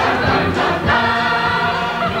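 A large stage cast singing together as a choir with instrumental accompaniment, holding a long note from about a second in.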